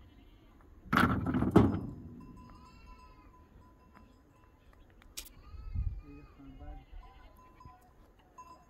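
Rocks tossed onto a pile of stones in a pickup bed give a short, loud clatter of several knocks about a second in. Faint bleating of sheep or goats follows, a few calls in the second half.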